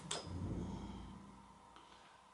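A short click as the electric skateboard's power switch is pressed to turn the board off, then quiet room tone with a soft tick near the end.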